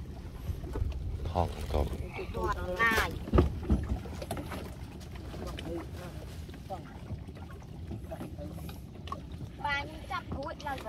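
A few short bursts of women's talk over a low steady rumble as two wooden boats lie alongside each other, with one sharp knock about three and a half seconds in.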